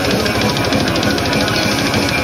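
Live heavy metal band playing loud: distorted electric guitar riffing over very fast, machine-gun-like drumming, heard from within the crowd.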